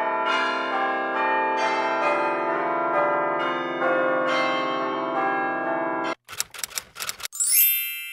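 Bells ringing together in many overlapping steady tones, the chord changing every second or so, cutting off suddenly about six seconds in. A quick run of clicks follows, then a rising chime sweep that rings out near the end.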